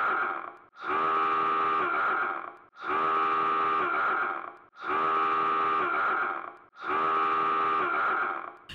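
A looped sound effect: the same long, steady blare repeated about every two seconds with brief gaps between, each one dipping slightly in pitch at its end.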